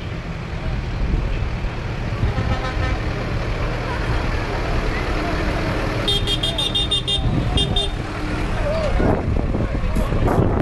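Diesel tractor engines running steadily at low speed. A rapid string of short, high-pitched horn toots comes about six seconds in, and a couple more follow just after.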